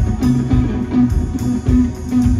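Live rock band playing loud: electric guitar and bass guitar over a steady drum beat with cymbals.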